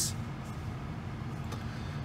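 Steady low background rumble inside a car's cabin, with no distinct events.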